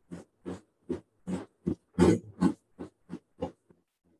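Countertop blender pulping boiled milfoil, cardboard and water. It is heard as a quick, choppy series of short bursts, about three a second, loudest around the middle, stopping shortly before the end.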